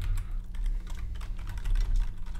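Typing on a computer keyboard: a run of quick keystrokes as a line of code is entered, over a low steady hum.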